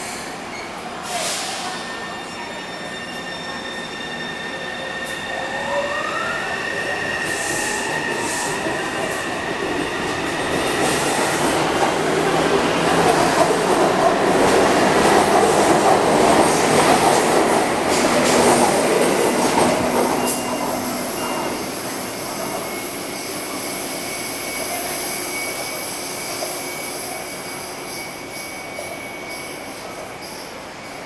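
Taipei Metro C301 electric train, refitted with new propulsion equipment, pulling out of the station. A rising whine from the traction equipment comes as it starts moving. The running noise of the cars then builds to its loudest as they pass, about half way through, and fades away.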